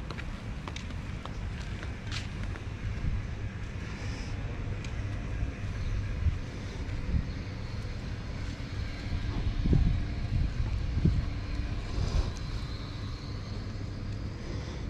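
Outdoor ambience dominated by an uneven low rumble of wind buffeting the microphone, swelling now and then, with a few faint clicks.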